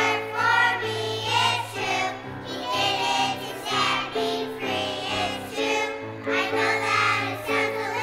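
Children's choir singing with musical accompaniment, a sustained melody over held low chords.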